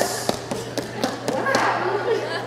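Footsteps on a stage floor and knocks at a wooden podium: a string of irregular sharp thumps and taps, about three or four a second, with faint voices behind.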